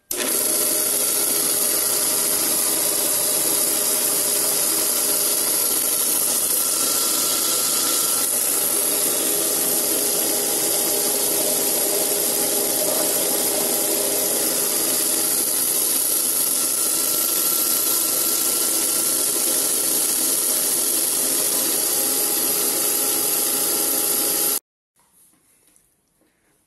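Ferrari bench drill press running steadily on its roller-chain drive: a continuous motor hum with steady tones under the whir and rattle of the chain over its sprocket clusters. The sound cuts off suddenly near the end.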